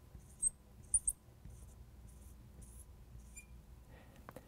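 Felt-tip marker drawing on a glass lightboard, faint: a few short high squeaks in the first second or so, then a string of brief scratchy strokes about every half second as dots and short lines are drawn.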